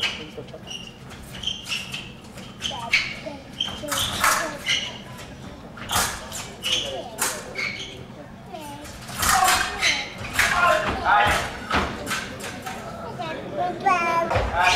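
Épée blades clicking and clashing, with sharp knocks of fencers' feet on the piste during a bout. Raised voices break in from about nine seconds in, as the action ends in a double touch.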